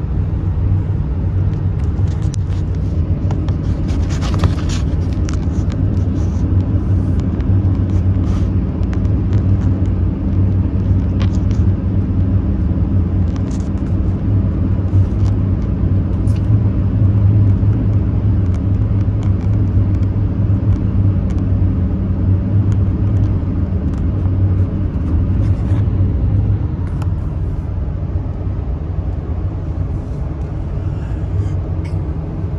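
Steady low rumble of road and engine noise inside a vehicle's cabin at highway speed, with a short burst of noise about four seconds in.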